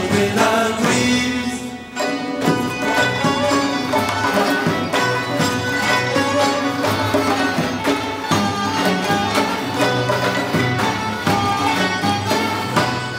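Live Persian traditional ensemble music: a bowed kamancheh and plucked strings over a steady frame-drum and tombak rhythm, with a male voice singing near the start.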